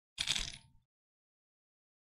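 A drink bottle handled and sipped from close to the microphone: one short, noisy sound about half a second long, near the start.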